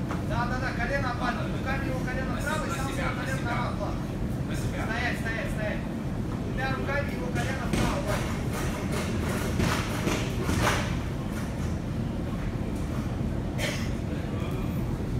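Voices calling out from around a grappling mat over a steady low rumble of the hall, with several sharp knocks in the second half and one more near the end.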